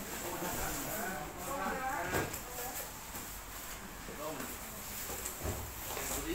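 Indistinct chatter of several people talking at once, with a couple of short knocks, one about two seconds in and one near the end.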